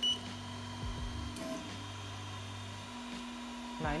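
A 3D printer's control-panel buzzer gives one short high beep as its rotary knob is pressed. The printer's motors then run with a low steady hum for almost three seconds before stopping, under a constant fan hum.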